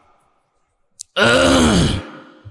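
A man's voice close to a microphone: after a pause and a short click, one long drawn-out vocal sound whose pitch rises and then falls.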